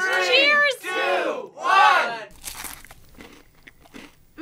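Three drawn-out voice calls of a 'three, two, one' countdown, then a crunchy bite into a frog leg about two and a half seconds in, followed by faint chewing.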